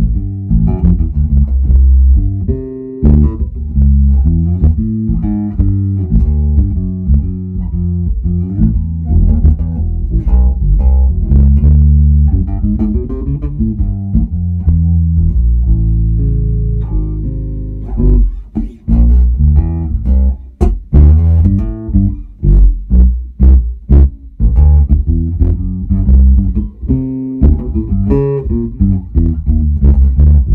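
Electric bass with Bartolini P- and J-style pickups played through a Genz Benz Shuttle amp into a Revsound RS410VT cabinet (four 10-inch speakers and a tweeter), its treble eased down for a smoother blues tone. It plays a line of connected notes; from about two-thirds of the way through come short, clipped notes with gaps between them, then the line flows again near the end.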